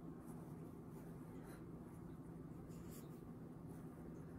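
Pencil sketching on sketchbook paper: faint, short scratching strokes, over a steady low hum.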